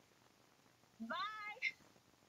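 A single short meow-like call about a second in, rising and then falling in pitch, followed by a brief higher squeak.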